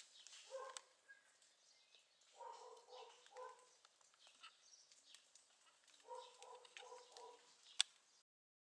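Faint distant animal calls: one short call, then a run of three matching notes about two and a half seconds in and four more about six seconds in. A single sharp click comes just before the end.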